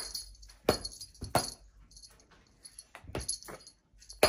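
Metal jingles shaken in irregular strikes: several close together in the first second and a half, sparser in the middle, then a few more before a sudden drop to silence just before the end.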